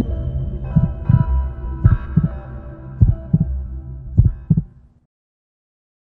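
TV news channel ident music: sustained synthesized tones under four deep double thumps, about one pair a second. It fades out about five seconds in.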